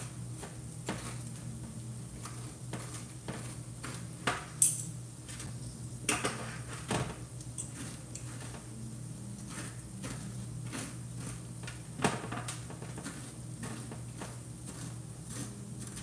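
A metal fork scraping and clicking in roasted spaghetti squash halves and against their pan, in scattered short strokes with a few sharper clinks, over a steady low hum.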